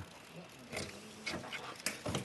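A few sharp clicks and crunches, about three over two seconds, as the shell of a red sea urchin is cut and pried open by hand with a small tool.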